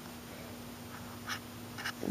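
Quiet room tone with a faint steady hum, and two brief soft hissing sounds in the second half.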